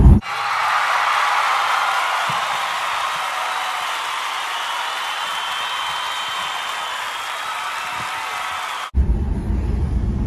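Crowd cheering: a steady roar of many voices that cuts in suddenly, eases off slightly, and cuts off abruptly near the end.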